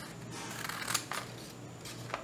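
Scissors cutting through a sheet of paper pattern in a few short, separate snips.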